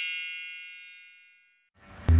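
A bright, metallic chime sound effect ringing out with many high tones and fading away to silence about a second and a half in.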